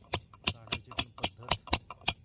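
Farrier's hammer tapping horseshoe nails into a hoof: a steady run of sharp blows, about four a second.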